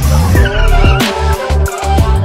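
Electronic background music with a heavy bass beat. Under it, a three-wheeled motorcycle's engine runs and its tyres skid on concrete as it tips over, in the first second or so.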